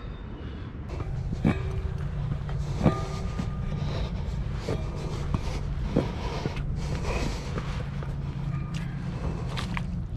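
Rubber boots knocking and scuffing on the rungs of a metal ladder as someone climbs down it, with a few sharp knocks, the loudest about three seconds in, over a steady low rumble.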